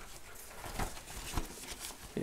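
Faint rustling of a backpack's roll-top fabric being handled and pulled open, with two soft knocks partway through.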